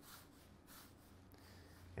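Near silence: faint rubbing of hands rolling gluten-free baguette dough back and forth on a wooden counter, over a low steady room hum.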